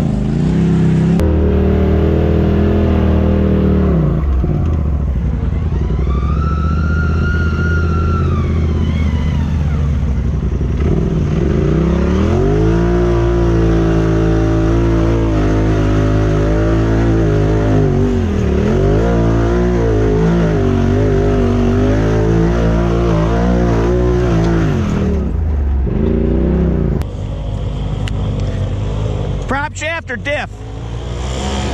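Side-by-side UTV engines running and revving over rough trail, the pitch rising and falling with the throttle. A high whine rises and falls over a few seconds early in the stretch.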